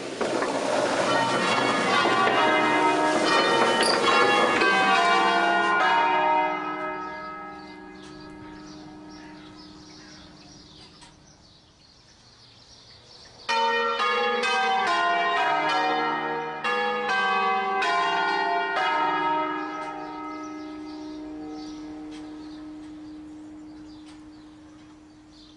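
A peal of five rope-rung church bells tuned in E-flat, swinging on wheels and striking in quick succession. The ringing dies away over a few seconds, then a second loud round of strokes starts suddenly near the middle. It fades again, leaving one low bell hum sounding on.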